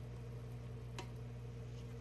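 Wooden spatula faintly stirring egg noodles and sauce in a pot, with one light click about a second in, over a steady low hum.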